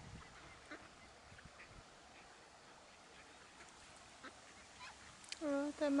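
Faint, scattered short peeps from a brood of mallard ducklings feeding. Near the end, a person's voice speaks briefly and louder.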